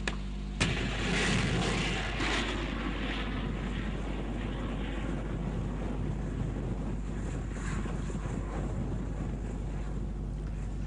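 Rushing noise of anti-aircraft missiles in flight. It starts abruptly about half a second in, is loudest over the next couple of seconds, then settles to a steady hiss.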